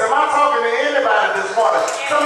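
A man preaching loudly into a handheld microphone, his voice carried on long, sliding, half-sung notes.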